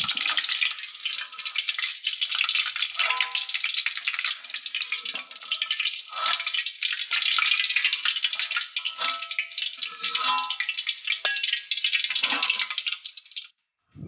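Hot cooking oil in a wok crackling and sizzling, with the stove just turned off, as fried chillies, garlic and shallots are scooped out with a metal spatula. The sizzle cuts off suddenly near the end.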